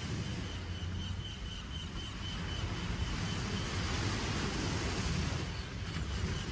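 A steady rushing wash of noise, a sound effect opening the recording, with a faint steady high whistle running through it.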